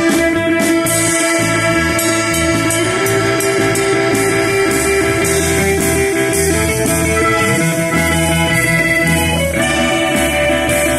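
Live band playing amplified with electric guitar, bass and drums, no vocals. Long held notes step up in pitch a few times over a moving bass line and a steady drum beat.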